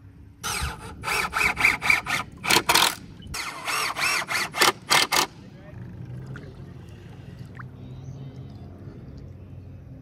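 A man laughing hard in quick repeated bursts for about five seconds. After that only a faint low steady hum remains.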